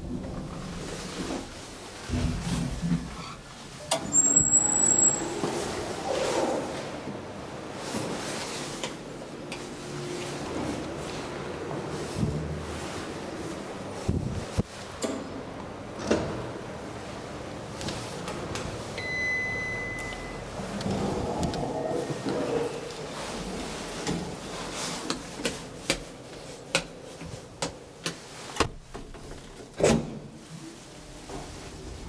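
A Bauer passenger elevator in use: its doors slide and clunk, and the car runs under a steady hum with scattered knocks. A short, very high beep sounds about four seconds in, and a longer, lower beep about two-thirds of the way through.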